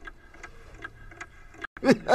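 Faint, regular ticking, a little under three ticks a second, over quiet room tone; a man starts to laugh near the end.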